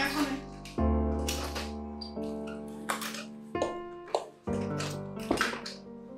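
Background film score: sustained electric-piano chords, a new chord struck every second or so and fading, with sharp percussive hits over them.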